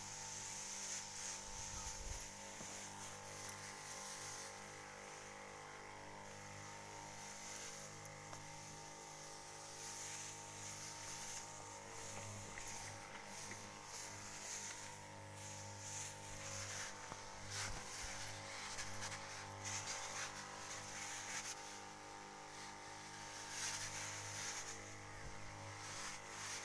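Motorised crop sprayer running with a steady humming drone. The hiss of its spray swells and fades every several seconds.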